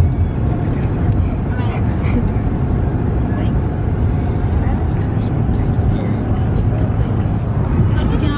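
Steady low road and engine rumble heard inside a moving car's cabin, with faint voices now and then.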